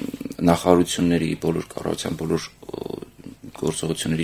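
Speech: a man talking into a studio microphone, in short phrases with brief pauses.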